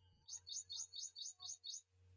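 A bird calling: a quick run of seven identical high chirps, about five a second.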